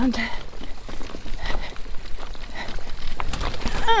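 A mountain bike ridden over rough, grassy ground: steady tyre and ride noise with a low rumble, and a few sharp knocks and rattles from the bike about three seconds in.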